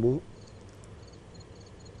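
A man's word ends just at the start, then faint, high-pitched insect chirping repeats through the pause over a low background hiss.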